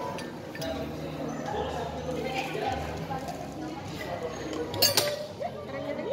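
A metal ice cream scoop clinks sharply once against a glass jar about five seconds in, over a steady murmur of voices.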